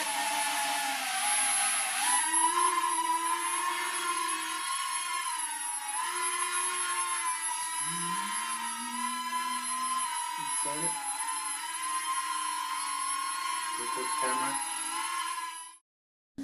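Air Hogs Millennium Falcon toy quadcopter's four small rotors whining in flight, the pitch wavering up and down as the throttle changes. It cuts off abruptly near the end.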